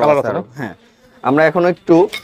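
A man's voice speaking in short phrases, with a brief pause in the middle.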